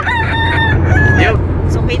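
A man imitating a rooster's crow: one long held call, then a shorter one about a second in. A steady low hum from the car runs underneath.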